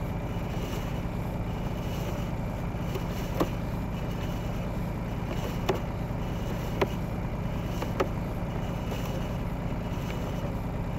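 Steady low machine hum, like an idling engine, with four short sharp clicks in the second half.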